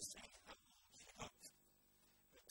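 Faint, distant man's voice speaking in short broken phrases, barely above the hiss of the room.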